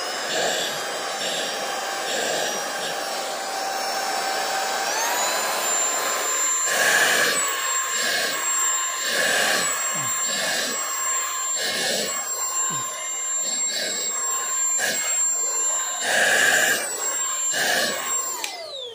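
Cordless stick vacuum cleaner switching on and running with a high motor whine. The motor steps up to a higher speed about five seconds in. After that the suction noise surges and eases about once a second as the nozzle is stroked through a cat's fur.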